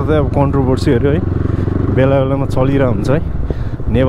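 Dirt bike engine running steadily as the bike rides along, with a man's voice talking over it.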